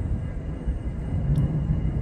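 Remote-controlled model airplane droning faintly overhead as it flies past, under a steady low rumble.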